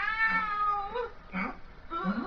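A high-pitched drawn-out cry that bends up and then falls over about a second, followed by a shorter cry about a second and a half in.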